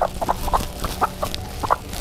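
Domestic hens clucking in a quick string of short calls, about ten in two seconds, as they are handled, legs tied, into a woven sack.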